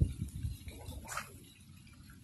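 Microphone handling and wind noise: an uneven low rumble as the jacket moves against the phone, with a brief rustle about a second in.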